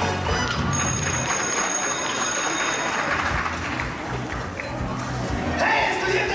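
Show music playing over the stadium sound system while the audience cheers.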